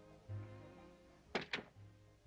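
Soft orchestral film score, with two sharp knocks about a fifth of a second apart a little past halfway through: a door being shut.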